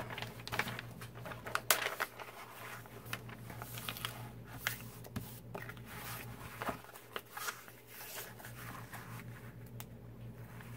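Diamond painting canvas being handled and flattened by hand: its plastic film and paper cover sheet crinkle and rustle in short, irregular bursts with scattered light clicks.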